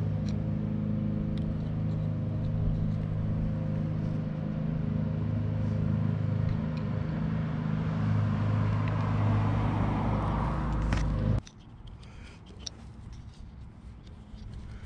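A motor vehicle engine idling with a steady low hum, with traffic noise swelling towards the end; the sound stops abruptly about eleven seconds in, leaving only faint handling rustle.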